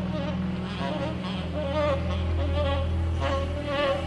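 Electric slide guitar on a red Gibson SG, playing a lead line of gliding, wavering notes with wide vibrato. Underneath, the band holds low sustained notes.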